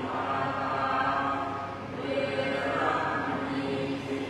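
Buddhist chanting by a group of voices in unison, held on a nearly steady pitch, with a short pause for breath about two seconds in.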